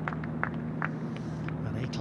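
A few spectators clapping, scattered irregular claps after a holed putt, over a steady low hum.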